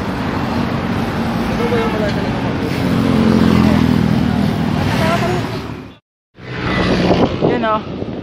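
Roadside street traffic: motorcycles and cars running past with a steady engine drone that grows louder in the middle, and people talking in the background. The sound drops out abruptly about six seconds in, then voices resume.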